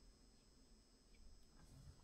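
Near silence: room tone, with a couple of faint small ticks in the second half.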